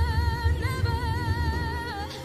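A woman's voice singing a long held high note on "never" with a wavering vibrato, the pitch stepping up about two thirds of a second in, over low musical accompaniment.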